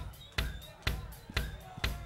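Live rock drum kit keeping a steady beat of about two hits a second, each hit heavy in the low end.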